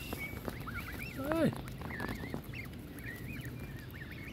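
Canada goose goslings peeping, many short, wavering high calls from a flock close by. About a second and a half in comes one louder, lower goose call that arches and falls.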